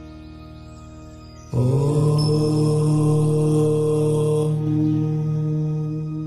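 A single long chanted 'Om' in a low voice, starting about a second and a half in and held steadily before fading near the end. It sounds over soft sustained meditation music.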